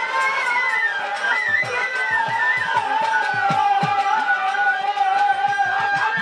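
Bangladeshi baul folk music: a long, smoothly gliding bowed violin melody over repeated hand-drum strokes whose low notes drop in pitch.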